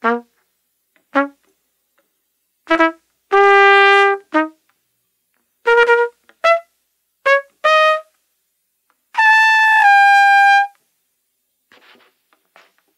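Solo trumpet playing short, separated notes with silences between them, and two longer held notes; the last held note steps down in pitch just before the end.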